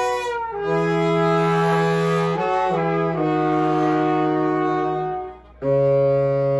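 Live band playing an instrumental passage of long held chords with many overtones, the chord changing every second or two. The sound dips out briefly about five seconds in, then comes back on a new held chord.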